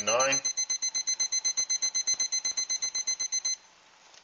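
Digital probe thermometer-timer alarm beeping rapidly with a high electronic tone, then cutting off suddenly near the end as it is silenced: the alarm signals that the water has reached the 212°F boiling point.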